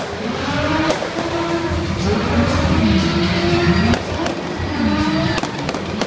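Stunt vehicle engines revving, their pitch swooping down and back up several times, with sharp pops and bangs among them, over music.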